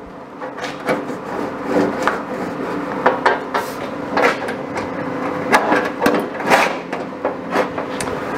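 Irregular metal knocks and scrapes as a steel clamping jig is moved along and tapped onto the round-bar edge of a sheet-steel bonnet, over a steady low hum.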